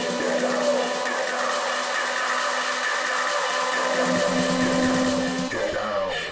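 Breakdown of an electronic dance track played in a DJ set: sustained synth chords under a dense, swelling noise riser, with no kick drum. In the last half second the noise sweeps down and thins out.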